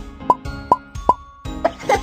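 Three quick cartoon 'plop' sound effects, about 0.4 s apart, each a short drop in pitch, over light background music.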